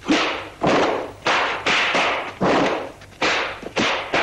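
Dubbed film fight sound effects: a quick run of about seven punch and block hits, each a sharp strike with a short noisy tail, at roughly two a second.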